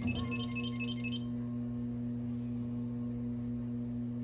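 A steady low hum with a higher overtone. In the first second, a quick run of about seven short, high twinkling pips sounds over it, then only the hum remains.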